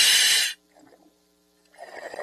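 A loud hiss of air through a diver's scuba regulator lasts about half a second. The sound then cuts off to near silence for about a second, and a murmur of noise comes back near the end.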